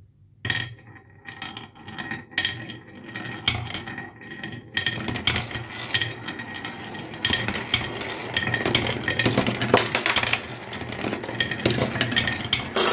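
Glass marbles rolling and clacking on a wooden marble run. Separate knocks come at first; from about five seconds in they give way to a steady rolling rattle of marbles on the wooden track and bowl.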